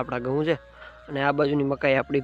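A man's voice speaking in short phrases, with a pause in the middle.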